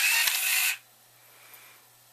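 CTD-200 series card dispenser mechanism running to feed a card out through its rollers: a steady mechanical whir with a click partway, cutting off suddenly under a second in. Faint room tone follows.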